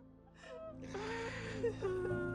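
A grieving man crying with a long gasping, breathy sob that builds about half a second in, over soft sustained background music.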